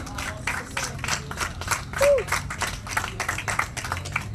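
A small audience applauding, with many hands clapping throughout.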